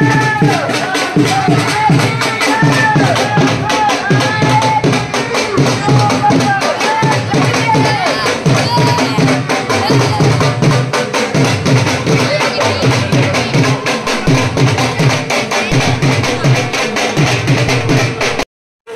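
Drums beating a rapid, steady rhythm, with a deeper drum pulsing underneath and voices chanting over the top.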